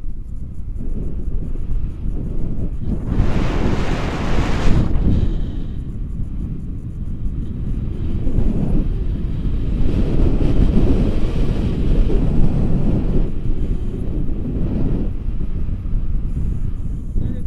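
Wind rushing over the camera's microphone on a tandem paraglider in flight, a steady low rumble that rises and falls in gusts, loudest about three to five seconds in.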